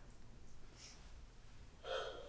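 Quiet room tone, then near the end a man's short, audible intake of breath, a gasp between lines.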